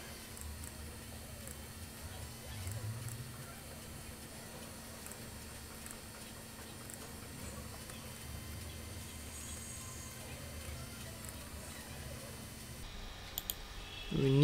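Quiet room tone from a desk microphone: a steady faint hum with low rumble and hiss, and a few faint clicks.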